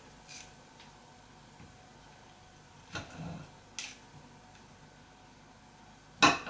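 Knife and fork faintly scraping and clicking on a plate while cutting food: a short scrape about half a second in, then two more around three to four seconds in.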